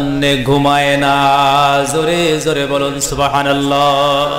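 A man's voice intoning an Islamic sermon (waz) in a sung, chanting style. He holds long, steady notes, and the pitch steps from one note to the next.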